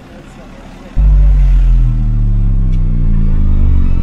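A loud, deep droning hum that comes in suddenly about a second in and slowly sinks in pitch, an added sci-fi drone sound effect.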